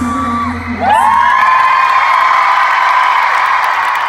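The pop song's last held note and bass end under a second in, then a large concert crowd breaks into high-pitched screaming and cheering that holds steady and loud.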